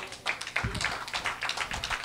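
Congregation clapping: many hands at once in a dense, irregular patter.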